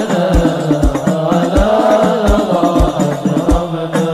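Arabic sholawat, a devotional song praising the Prophet, sung in a chanting style over a steady deep drum beat of about three beats every two seconds.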